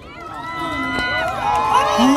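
A crowd of fans screaming and cheering, many high voices at once, growing louder as the performers come onstage.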